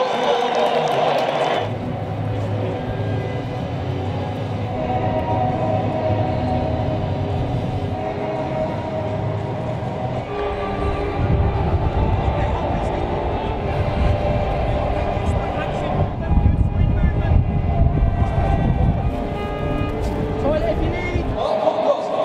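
Background music: held chords over a low, pulsing beat.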